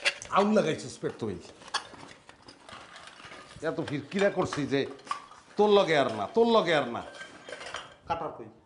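A man grunting and groaning in three strained, wordless bouts, with clicks and metallic clinking and rattling from objects handled between them.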